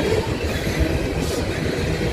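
Tank cars of a CSX freight train rolling past close by: a steady, loud rumble of steel wheels on the rails with constant irregular clatter.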